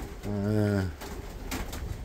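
Domestic pigeons in a wooden loft, with cooing and movement in the background. About a quarter second in, a man's voice holds a steady hesitation sound for under a second, and a few short rustles follow.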